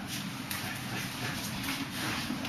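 Hard breathing and the soft brush and slap of forearms meeting in quick, irregular exchanges during Wing Chun gor sau sparring.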